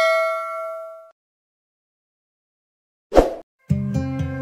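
A bell-like notification ding from a subscribe-button animation rings with several clear tones and fades away over about a second. Then comes silence, a short burst of noise about three seconds in, and music starting near the end.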